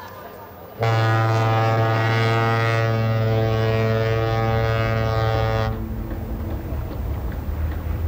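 A ship's horn gives one long, low, steady blast of about five seconds, starting suddenly about a second in; afterwards a low rumble carries on.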